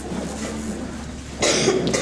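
A person coughing once, a short loud burst about one and a half seconds in.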